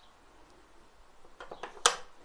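Near silence, then a couple of faint clicks and one sharper click near the end: a wall light switch being flipped off.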